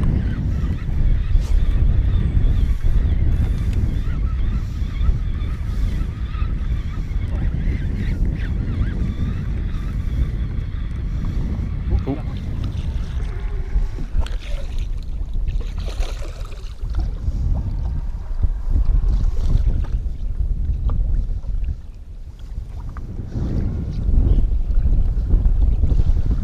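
Wind buffeting the microphone with water lapping against a fishing boat's hull, a steady low rumble that dips briefly near the end.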